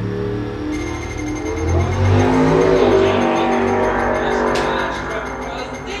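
A blown twin-turbocharged 383 cubic-inch V8 in a VH Holden Commodore drag car launching from the start line at full throttle and running away down the quarter mile. It is loudest two to three seconds in, then fades as the car pulls away.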